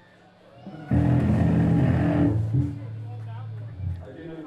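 A live band strikes a loud chord on electric guitar and bass about a second in and holds it for about a second and a half. A low bass note then rings on until near the end.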